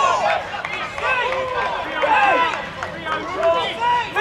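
Several men's voices shouting and calling out at once across an outdoor football pitch, overlapping shouts rising and falling throughout.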